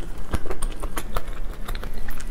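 Close-miked chewing of crispy fried chicken: a quick, irregular run of small crunches and crackles.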